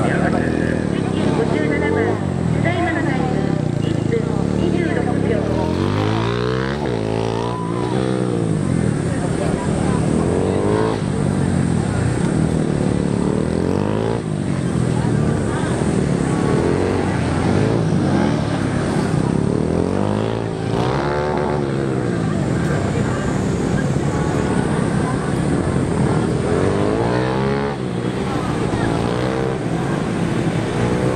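Honda Grom's small single-cylinder four-stroke engine revving up and down again and again as the bike accelerates and brakes between tight cone turns, its pitch climbing and dropping every second or two.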